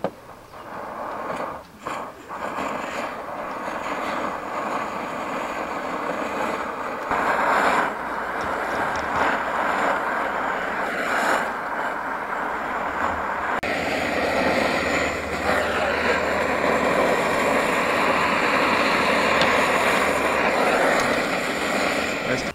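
Egg mixture frying in oil in a pan on a portable gas canister camping stove: a steady sizzle together with the burner's hiss. It begins with a few sharp clicks, grows louder over the first couple of seconds, and steps up abruptly twice, about 7 and 14 seconds in.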